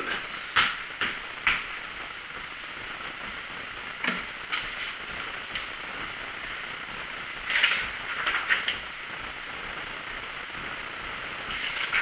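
Steady hiss of room noise with scattered soft, short sounds of a person doing jumping jacks: sneakers landing on a rug and heavy breaths, a few in the first second or so and a small cluster past the middle.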